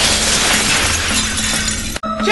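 Glass shattering: a pane breaking and shards falling in a long, dense crash of breaking glass.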